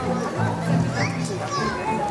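Background music with a low, pulsing bass, with children's and adults' voices from the watching crowd over it.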